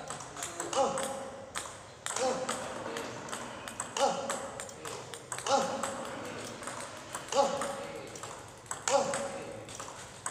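Celluloid-type table tennis ball clicking sharply off bats and table in a steady backhand practice rally, several hits every second. A short voiced call comes in about every one and a half seconds.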